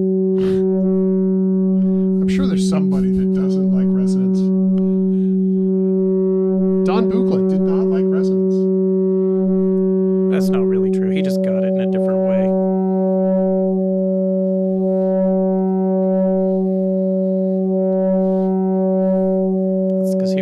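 Eurorack modular synthesizer voice shaped by a Flamingo harmonic interpolation module: a steady pitched drone around 190 Hz with a rich stack of overtones, the overtone mix shifting as the module's knobs are turned. In the second half some of the upper overtones pulse about once a second, and a few brief sweeping sounds rise over the drone in the first half.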